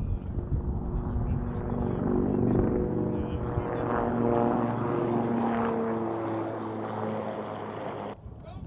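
CH-53E Super Stallion heavy-lift helicopter running: a steady rumble with humming tones that shift in pitch, cut off abruptly at the end.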